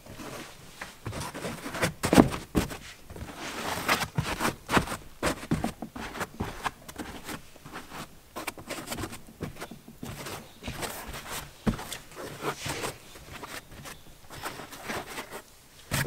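A foam insert being pushed and settled by hand into a hard rifle case: irregular rustling and scuffing of foam rubbing against foam and the case walls, with scattered soft knocks.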